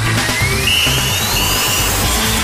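TV sports-segment intro music: a rising electronic sweep that climbs steadily in pitch over a loud, noisy whooshing wash.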